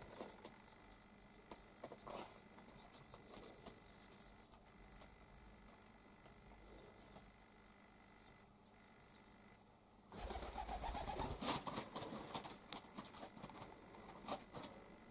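A pigeon cooing softly in a small room. About ten seconds in, a louder burst of rustling and clicking lasts a couple of seconds.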